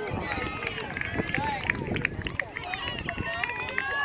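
Distant, overlapping voices of players and spectators chattering and calling out across an outdoor playing field.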